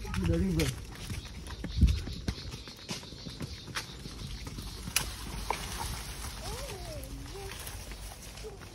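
Horses walking on a dirt trail: scattered hoof clops and steps in grass, with a single low thump about two seconds in.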